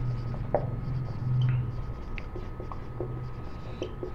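Marker pen writing on a whiteboard: a run of short scratching strokes and light taps of the tip as a phrase is written out.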